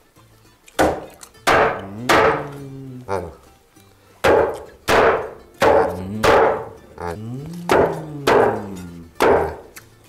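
Meat cleaver chopping through roast lamb bones on a wooden carving board: about a dozen heavy blows, roughly one every two-thirds of a second, starting about a second in, each leaving a short ringing tone.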